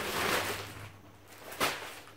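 A plastic mailer bag rustles and crinkles as it is handled, fading about a second in. Near the end there is one short, sharp crackle.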